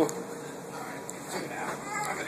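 A small child's quiet high-pitched squeals, a couple of short vocal sounds in the second half.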